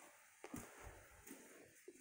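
Near silence: room tone, with one faint brief sound about half a second in.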